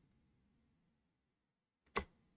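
Near silence, broken by one short sharp click just before the end.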